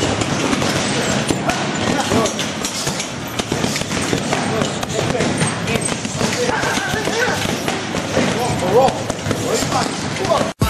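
Boxing gloves striking a heavy bag in quick repeated punches, the thuds running on over busy gym noise with people talking in the background.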